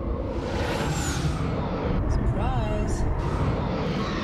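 Soundtrack of a sci-fi TV space battle: a steady low rumble and music under a sweeping whoosh about a second in, with a short warbling effect about two and a half seconds in.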